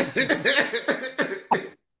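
Men laughing hard in rapid, choppy bursts that break off shortly before the end.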